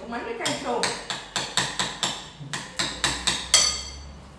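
A quick series of about a dozen sharp knocks and clinks, roughly three a second with uneven spacing, the loudest near the end.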